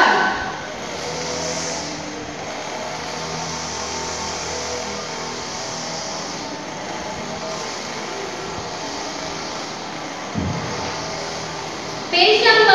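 A steady, even hiss over a faint low hum, with a single thump about ten seconds in.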